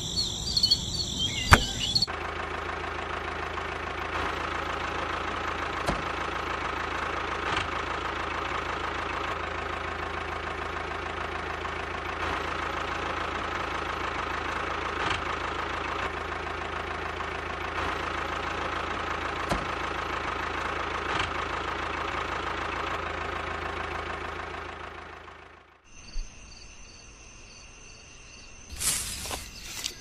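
A miniature DIY toy tractor's small motor running with a steady drone for over twenty seconds, fading out near the end. Crickets chirp at the start and at the end.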